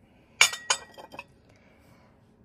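A porcelain teacup set down on its porcelain saucer: two sharp clinks about a third of a second apart, the first ringing briefly, then a few lighter taps as it settles.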